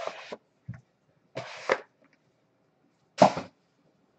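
Gloved hands handling a cardboard trading-card box: three short rubbing, scuffing sounds, the last and loudest about three seconds in.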